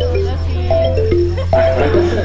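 Background music: short runs of three or four notes stepping downward, repeated, over a steady held bass note.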